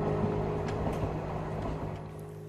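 Rumble of an elevated Metro train passing, over a sustained music chord; both slowly fade.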